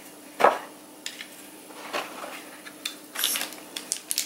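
Small hard plastic robot-vacuum accessories being handled and unpacked: a sharp knock about half a second in, then a few lighter clicks and a brief crinkle of a plastic bag.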